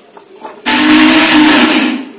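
Electric mixer grinder pulsed once for just over a second, its motor and blades whirring through grated coconut with spices in a steel jar; it starts suddenly and cuts off just before the end.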